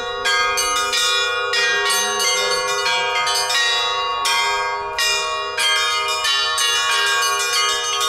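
Church bells being rung, several bells struck in quick, irregular succession, their ringing overlapping throughout.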